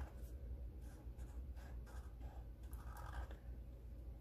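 Faint scratching of a Sharpie marker tip on paper as a run of short zigzag strokes is drawn.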